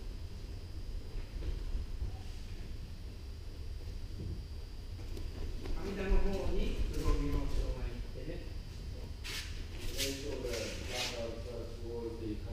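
Indistinct speech in the second half, over a steady low rumble.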